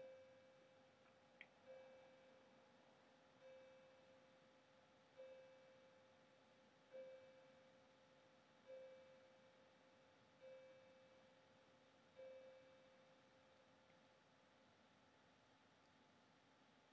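A clock chiming the hour for nine o'clock: faint, evenly spaced single-tone strikes about every 1.7 seconds, each ringing away, eight of them, the last about three-quarters of the way through.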